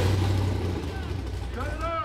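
Low rumble of a rock bouncer's engine, with people shouting over it; the rumble drops away at the very end.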